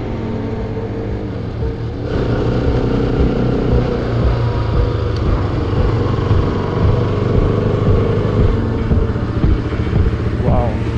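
Bajaj Pulsar RS200's single-cylinder engine running steadily as the motorcycle cruises, heard from the rider's camera along with road noise. The sound jumps louder about two seconds in and stays level after that.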